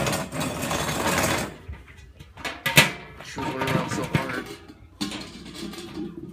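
Handling noise from the black metal bowl of a kettle barbecue grill being assembled: scraping and rubbing in the first second and a half, then one sharp knock just under three seconds in. Low voices are heard in between.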